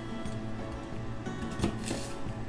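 Background music, with a chef's knife cutting through a peeled apple and knocking twice on the cutting board near the end.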